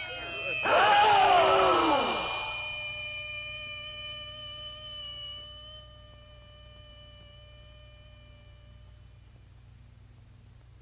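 Voices let out loud falling exclamations for the first two seconds or so, over a single held tone with overtones that then rings on alone and slowly fades away by about nine seconds.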